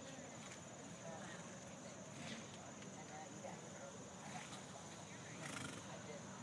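Faint hoofbeats of a horse going around a jumping course on a dirt arena, heard from a distance as soft, irregular knocks over a steady high hum.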